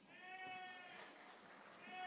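Two faint, distant high-pitched calls from someone in the audience, each held on one pitch: the first lasts under a second, the second is shorter and comes near the end.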